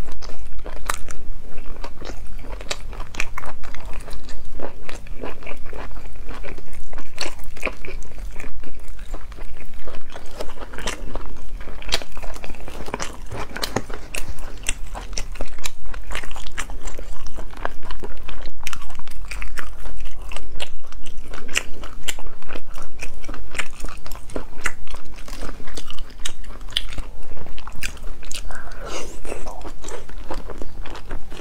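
Close-miked eating: a person biting and chewing braised food, with a continuous run of sharp, irregular crunches.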